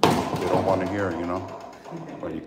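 A man talking, starting abruptly and loudly; speech only, with no other distinct sound.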